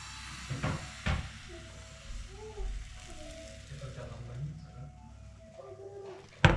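Thin pancake batter sizzling as it is ladled into a hot frying pan, the hiss strongest in the first couple of seconds and then dying down. There are two light knocks about a second in.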